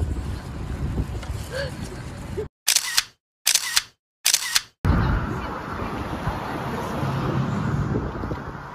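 Outdoor background noise, broken about two and a half seconds in by three short camera-shutter clicks, each set off by dead silence. Outdoor background noise returns at about five seconds.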